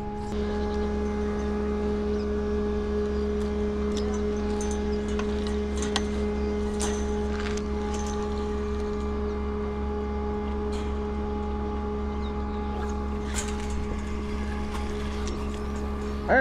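A steady low hum holding several constant tones, with a few light clicks and ticks over it.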